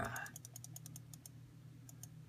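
A run of light computer-keyboard clicks, quick at first and thinning out toward the end, over a faint steady low hum.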